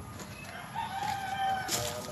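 A rooster crowing once: one long held note that falls slightly at its end, about a second in. A couple of light knocks follow near the end.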